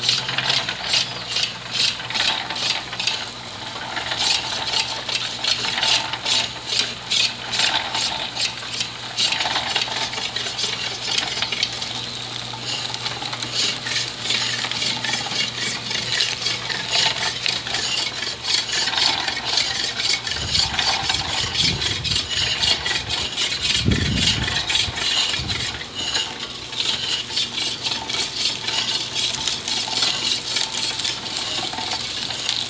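Homemade electric sugarcane mill running and crushing cane. Its geared rollers make a rapid, continuous clatter over a steady electric-motor hum, and the juice splashes into a metal pail. A few low rumbling thumps come about two-thirds of the way through.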